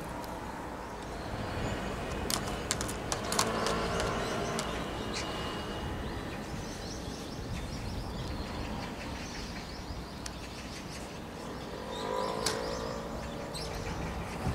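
Birds at a balcony feeder over a steady low city hum: scattered sharp ticks, mostly in the first few seconds and again near the end, as a common kestrel picks at meat in a plastic tray, with a few faint chirps.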